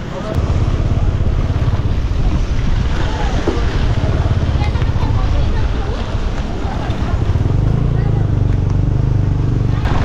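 Motorcycle engine running steadily under way on a rough, muddy road, with wind buffeting the microphone.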